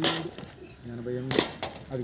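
Hard knocks of coconuts being pulled off a pile and knocking against each other: a sharp one at the start and two more about a second and a half in. A man's short vocal sounds come in between.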